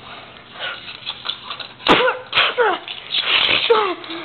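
A person's voice making breathy, hissing mouth sound effects, several in a row, each with a short squeal that falls in pitch. There is a sharp click about two seconds in.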